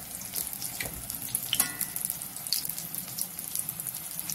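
Besan-battered curry leaves deep-frying in hot oil in an aluminium kadai: steady sizzling with many small crackles.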